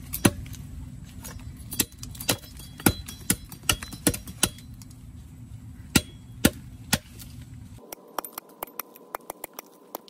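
A blade chopping into a green bamboo stalk: about a dozen sharp, irregular strikes, followed by a run of quicker, lighter knocks near the end.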